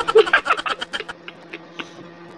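A man laughing in a rapid, buzzing giggle that dies away about a second in.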